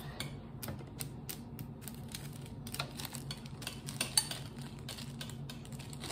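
Irregular small clicks and taps from hands handling plastic containers and utensils at a tabletop, over a steady low hum.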